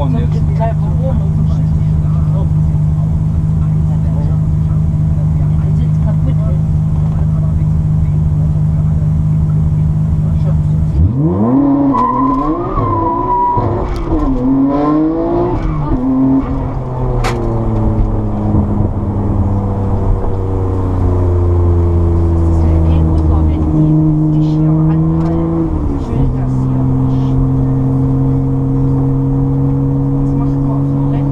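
Nissan Skyline R34 GT-R's twin-turbo RB26 straight-six heard from inside the cabin, first running steadily at low revs. About a third of the way in it revs up through the gears, the pitch climbing and dropping with each shift, then it settles into a steadier note, with another shift near the end.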